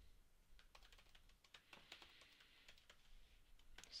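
Faint typing on a computer keyboard: a run of quick, irregular key clicks as a line of text is typed.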